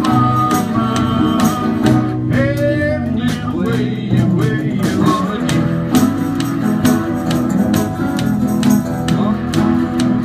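Live guitar jam: an acoustic guitar strummed in a steady rhythm together with other instruments, with a sliding melodic line rising briefly about two to three seconds in.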